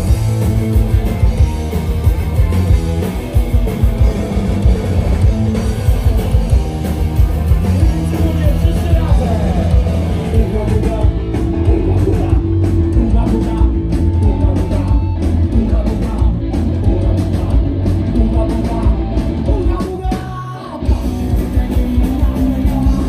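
Punk rock band playing live at full volume: electric guitars, bass and fast drums with singing, with a short break in the music about twenty seconds in.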